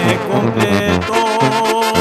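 Instrumental passage of Mexican banda music, with brass instruments playing and a long held note in the second half.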